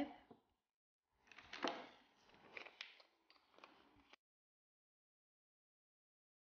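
Light handling noise: a few soft clicks and rustles, the loudest about a second and a half in. The sound then cuts off abruptly to dead silence a little after four seconds in.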